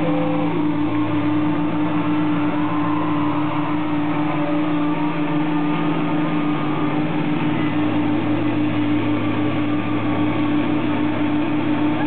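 Electric guitar feedback drone through the stage amplifiers: steady held low tones with fainter higher tones above, sustained with no playing.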